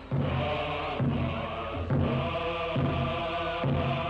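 Film-score chanting: a group of voices chanting short repeated phrases over music, in a steady rhythm of about one phrase a second.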